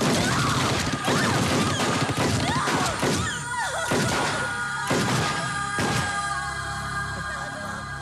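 Action-film soundtrack: music with a run of sharp gunshot and impact effects over about the first six seconds, thinning to held music tones near the end.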